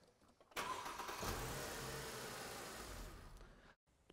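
Car starter motor cranking the engine for about three seconds. It begins about half a second in and dies away shortly before the end.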